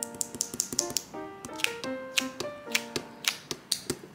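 Light piano music with a quick, irregular run of sharp taps, several a second, from a kneaded eraser being pressed and dabbed against a pencil drawing on paper.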